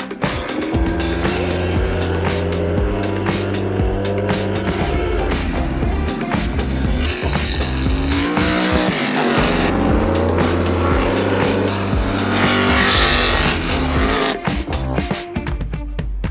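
A field of Formula 5000 racing cars' V8 engines accelerating hard away from a standing start, the pitch rising again and again as they climb through the gears, mixed with background music that has a steady bass.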